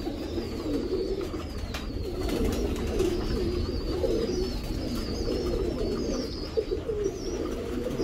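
Domestic pigeons cooing steadily in the loft, low warbling coos overlapping one another.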